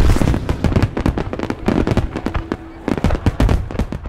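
Fireworks going off: a rapid run of bangs and crackles that thins out and fades toward the end.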